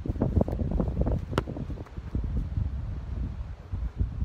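Wind buffeting the microphone in gusts, with one sharp click about a second and a half in.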